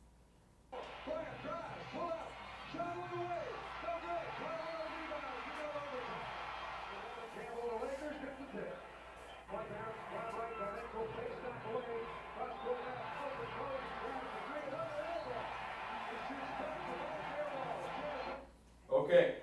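Basketball TV broadcast audio played back over the lecture room's speakers: a commentator talking over arena crowd noise. It starts about a second in and runs at a fairly even level.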